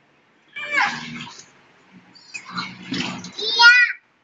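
A young child's high-pitched vocalizing without clear words: a short burst about half a second in, then more babbling that ends in a loud, high squeal near the end.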